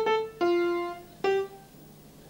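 Four single notes played on a piano, the last one short: the opening phrase of a song, sounded out as la-la-fa, played as a name-that-tune clue.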